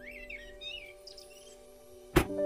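Birds chirping in quick rising and falling calls during the first second or so, over quiet background music with long held notes.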